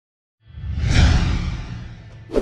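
A whoosh sound effect with a low rumble under it, swelling in about half a second in, peaking around a second, then fading away.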